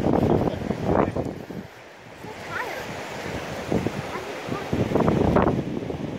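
Wind buffeting the microphone over ocean surf, the rumble rising and falling in gusts.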